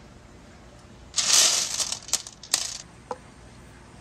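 Glass marbles handled on a painted wooden pegboard: a short rattling clatter of marbles knocking together about a second in, then three sharp glassy clicks.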